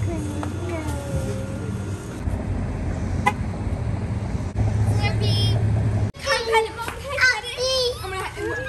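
Children's voices, then a steady low vehicle engine hum for a few seconds. After a cut about six seconds in comes the repeated high peeping of baby chicks in a brooder tub, with children talking over it.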